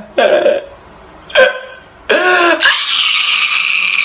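A man crying in short, gulping sobs with wavering pitch, followed by a steady hiss-like noise from about two and a half seconds in.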